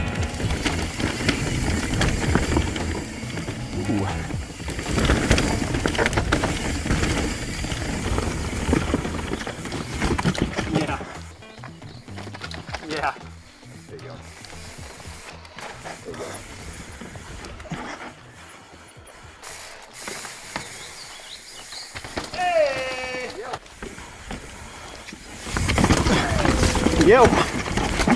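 Mountain bikes ridden over a rocky dirt trail: tyres and frame rattling and knocking over rock and roots, loud for about the first ten seconds and then quieter, with the ratcheting tick of a freehub while coasting.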